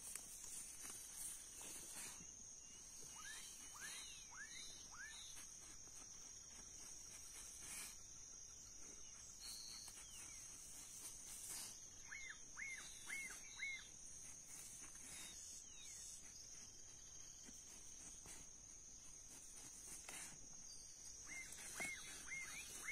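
Quiet rural outdoor ambience: a steady, high-pitched insect trill, with three runs of four or five short falling chirps, near the start, about midway and at the very end, and a few faint soft knocks.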